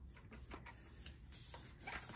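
Bone folder rubbing along the score lines of thick white cardstock, burnishing the folds: faint papery rubbing strokes.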